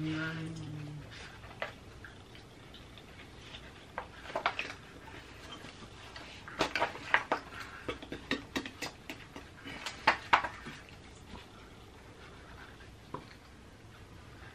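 Dry-erase marker scratching on paper with the sheets rustling: short, quiet scratchy strokes, mostly clustered between about four and ten seconds in.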